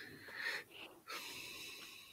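Film sound effects, quiet: a short hissing electronic sound, then about a second in a longer, steady hiss with level tones that fades away.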